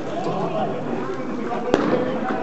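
A single sharp click of a table tennis ball being struck, about three-quarters of the way through, over a steady murmur of voices.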